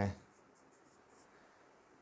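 Faint strokes of a marker pen on a whiteboard as a straight line is drawn.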